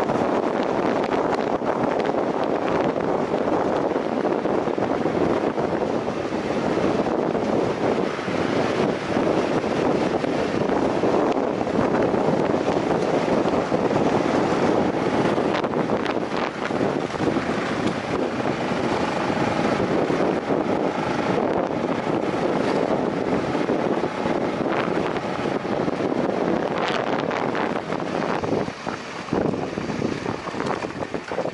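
Steady wind rush on the microphone of a motorcycle moving along a gravel road, mixed with engine and tyre noise; the noise dips a little near the end.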